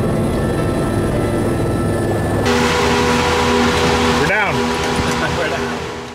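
Background music cuts abruptly, about two and a half seconds in, to the cabin noise of a Eurocopter EC130 helicopter: a steady, loud hiss with a low hum from its turbine and rotor.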